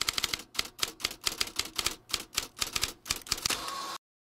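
Typewriter keys clacking in a quick, uneven run of sharp strikes, several a second, as a sound effect for text being typed out; the strikes stop shortly before the end.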